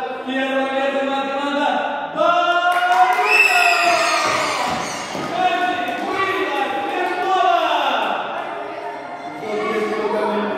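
A voice calling out in long, drawn-out tones that echo in a large gym hall, with thuds on the floor.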